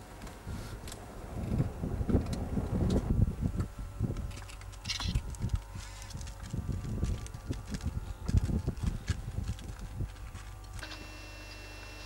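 Low, gusty rumble of wind buffeting the microphone, rising and falling unevenly. Near the end it gives way to a steady low hum with faint ticking.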